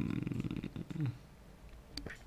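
A man's voice trailing off into a low, creaky hesitation sound with a falling pitch for about a second, then a quiet pause.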